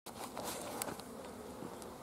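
Honeybees from a newly installed package buzzing steadily and faintly around an opened hive.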